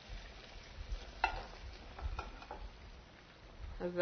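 Wooden spoon stirring sliced beef in panang curry sauce in a frying pan on a hot burner, with a few light knocks of the spoon against the pan about one and two seconds in.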